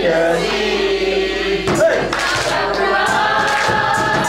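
A group of young voices singing a song together, with hand claps along in the second half.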